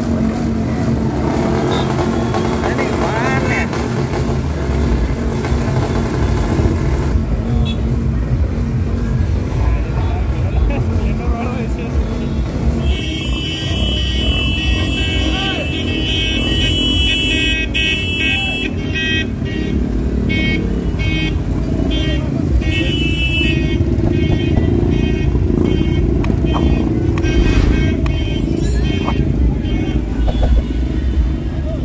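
Motorcycle engines running as a procession of motorbikes rides slowly past, mixed with crowd voices and music. From about halfway through, a shrill high tone sounds in a string of repeated short blasts.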